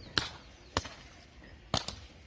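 Paintball markers firing: sharp single pops about a fifth of a second in and near the middle, then a quick pair near the end.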